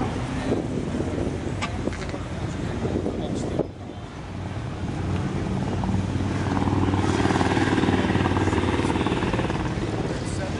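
A motor vehicle's engine running nearby, growing louder about halfway through and then holding steady, over the murmur of an outdoor crowd.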